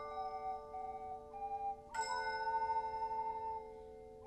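Handheld tone chimes and ocarinas playing a slow tune together. A chord of chimes is struck about two seconds in and rings on under the held ocarina notes.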